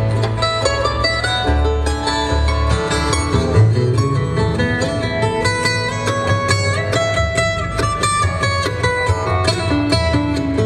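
Live bluegrass trio playing an instrumental passage on acoustic guitar, mandolin and upright bass, with quick picked notes over a steady plucked bass line.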